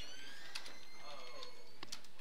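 A pause in a man's speech: only a low, steady background hiss with faint traces of voice.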